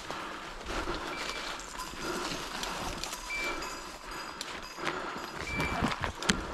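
Footsteps crunching and pushing through dry leaf litter and brush in woodland. A few short, high electronic beeps come now and then, from a hunting dog's beeper collar.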